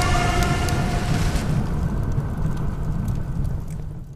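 Logo-reveal sound effect: the long tail of a boom, a dense low rumble with a fading ringing tone that slowly dies away over about four seconds.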